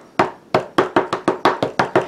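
Small plastic-cased ink pad dabbed repeatedly onto a wood-mounted rubber stamp to ink it: about ten quick taps that speed up as they go.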